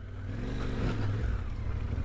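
Yamaha Ténéré 700's parallel-twin engine running at low speed off-road, its revs rising briefly a little after half a second in.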